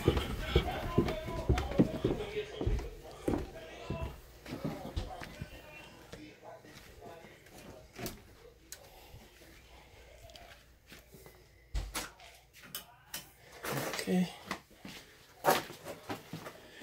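Indistinct voices in the first few seconds, then footsteps and scattered knocks and clicks as people move through a house, with a thud about twelve seconds in and a sharp click near the end.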